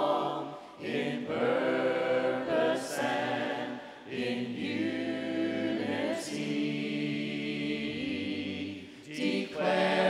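Worship team of men's and women's voices singing a cappella in harmony through microphones, no instruments, in sustained phrases with short breaks about a second in, around four seconds and near nine seconds.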